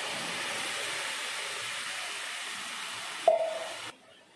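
Hot oil and fried onions sizzling steadily as boiled green peas and their cooking water are poured into the pot. About three seconds in comes a single ringing metal knock, and the sizzle cuts off just before the end.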